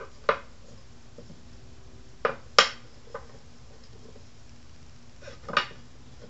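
Unscrewed wooden table legs being laid down on the wooden tabletop: a few sharp wooden knocks, the loudest about two and a half seconds in, with another pair near the end, over a faint steady hum.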